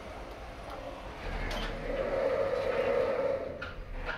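OTIS Gen 2 lift car doors sliding shut under the door operator after the door-close button is pressed: a rumbling run with a hum that swells about a second in and is loudest in the middle, then a couple of clicks near the end as the doors come together.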